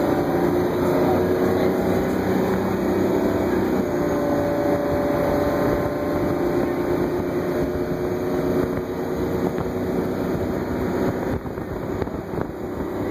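Crown Supercoach Series 2 bus under way, heard from inside: its engine runs steadily under a haze of road and wind noise.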